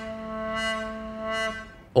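A single held synth note from Native Instruments Massive, played on a ROLI Seaboard, with a brassy tone and a steady pitch. Pressing harder on the key opens the filter cutoff, so the note swells brighter and falls back duller several times before it stops just before the end.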